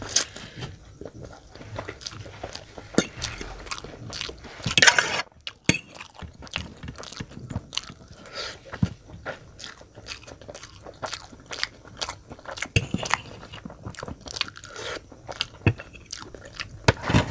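Close-miked wet eating sounds of a person chewing Maggi instant noodles, with irregular smacks and clicks of the mouth throughout. A louder, hissing slurp comes about five seconds in.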